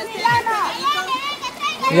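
Excited, high-pitched voices calling out without clear words, over a faint rush of river water.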